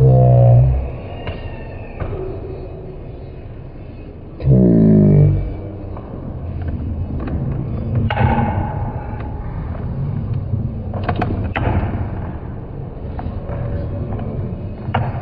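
Steel balls rolling down curved steel tracks: two loud rolling rumbles that rise in pitch, one at the start and one about four and a half seconds in, then sharp clicks as the balls strike one another around eight seconds in and again near eleven to twelve seconds.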